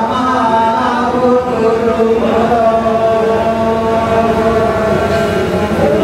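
A man singing a slow, chant-like melody in long held notes, accompanied by bowed string folk instruments.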